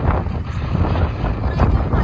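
Strong wind gusting over the microphone: a loud, uneven low rumble that swells and drops with each gust.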